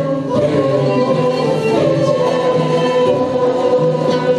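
A choir sings a slow Turkish folk hymn with a male lead voice, holding long notes. Traditional Turkish instruments accompany it, frame drums and ney among them.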